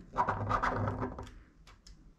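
Recoil spring on a Grand Power Stribog's recoil rod being compressed by hand while the retaining collar is worked loose: about a second of rapid small metallic clicks and scraping, then a few faint ticks.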